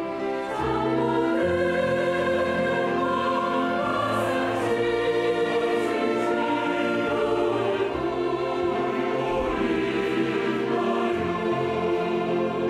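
Large mixed choir singing a slow hymn-like song in Korean, accompanied by an orchestra of strings and French horns.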